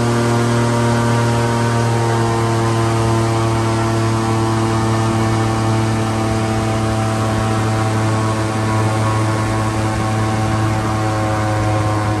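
Airboat engine and propeller running steadily while under way: a constant low drone with engine harmonics over a rushing hiss.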